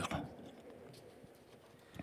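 A pause in speech: the tail of a spoken sentence at the very start, then near silence with faint outdoor background from the broadcast, and a small click near the end.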